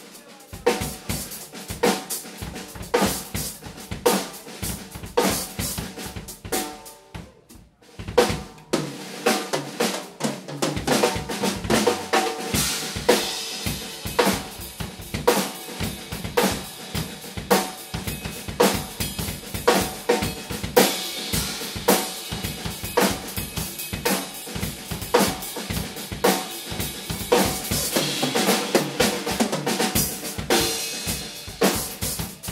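Two acoustic drum kits played together, with kick, snare and cymbals in a steady groove. There is a brief lull about seven seconds in, then the playing picks up busier with more cymbal wash toward the end.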